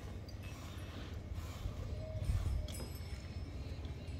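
Hand-milking a Gir cow: jets of milk squirting from the teats into a steel bucket in a loose, repeating rhythm, over a steady low rumble.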